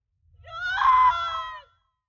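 A woman cries out once in distress: a single loud, pitched cry about a second and a half long that rises, holds, then sags slightly in pitch.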